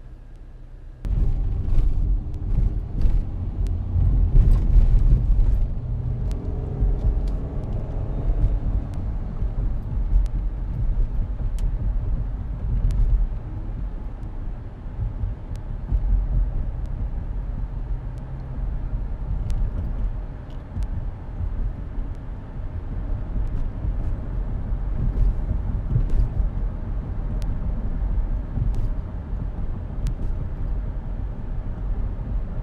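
Car cabin noise while driving: a steady low rumble of road and engine noise, starting about a second in.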